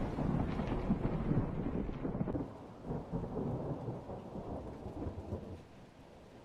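Thunder rumbling and crackling over steady rain, dying away over several seconds until mostly faint rain is left near the end.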